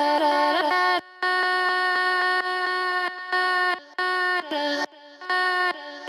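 Chopped vocal samples of held sung notes, triggered in a repeating rhythmic pattern by the Access Virus Classic synthesizer's built-in arpeggiator. The notes step between pitches and cut off abruptly, with short breaks about a second in and again past the middle as the arpeggiator pattern is changed.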